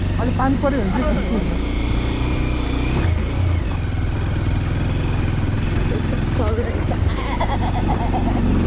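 Motorcycle engine running steadily, heard from the rider's seat while riding a rough dirt and stone track, with brief voices near the start and again near the end.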